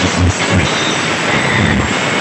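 Very loud, distorted output of a carnival sound-system rig. For a moment the bass beat thins out into a dense, rushing noise.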